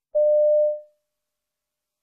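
A single electronic beep: a steady, mid-pitched pure tone lasting a little over half a second and then fading out. It is the cue tone of a Cambridge exam listening test, marking the start of a piece.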